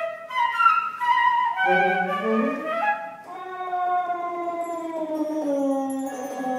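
Flute and saxophone playing together in a contemporary chamber piece: they enter suddenly with a quick run of notes stepping downward, a lower line rises, then both hold long notes that slowly sink in pitch.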